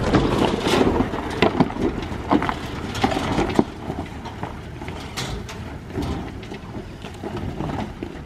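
Four-wheel-drive ute crawling slowly over a rocky track: a low engine rumble under the tyres crunching and knocking on loose stones and rock ledges, with many sharp knocks in the first few seconds that thin out as it moves away.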